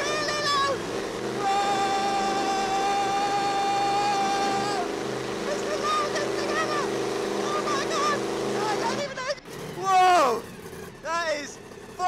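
Bone Shaker monster truck's engine running loud, heard from inside the cab, with a passenger's excited yells and a long held high cry over it. The engine noise drops away about nine seconds in, and loud whoops follow.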